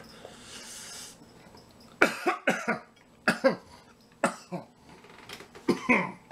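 A man coughing repeatedly in short, sudden fits of two or three coughs, starting about two seconds in, brought on by potent mustard on the egg roll he is eating.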